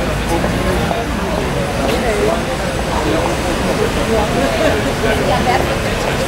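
Indistinct talk from people near the camera over steady city street noise.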